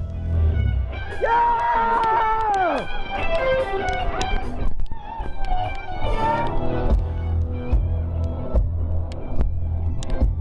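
Live rock band playing amplified. Long sustained lead notes bend and fall away about three seconds in, over a heavy bass beat.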